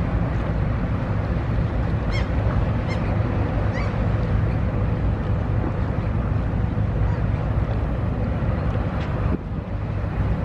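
Steady low rumble of a tug and cargo ship under way, mixed with wind buffeting the microphone. A few short high bird calls come in the first four seconds.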